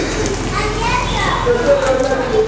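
Children's voices calling and chattering in the background, over a steady low hum.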